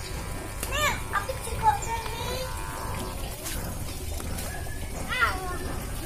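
Young children's high voices calling out as they play, loudest near the start and again about five seconds in, over a steady low background rumble.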